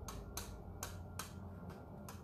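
About five light, sharp taps spread over two seconds as metallic paint is dabbed onto a craft piece with a popsicle stick or applicator, over a steady low hum.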